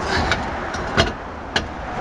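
A few sharp metallic clicks and knocks, the loudest about a second in, as a car's spare wheel is lined up on the hub studs and its lug nuts started by hand, over a steady low rumble.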